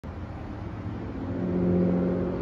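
A motor vehicle's engine running nearby, a steady low engine note that grows louder through the two seconds.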